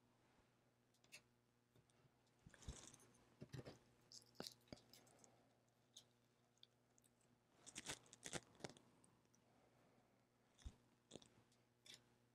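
Faint, scattered taps and crinkly rustles from hands handling glitter-coated leather earrings and their paper sheet while knocking off the excess glitter. They come in two small clusters, with long near-silent gaps between.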